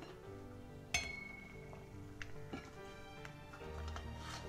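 Quiet background music, with one sharp metallic clink about a second in that rings briefly: the stainless steel pot knocked as toast is set into the hot water. A few fainter ticks follow.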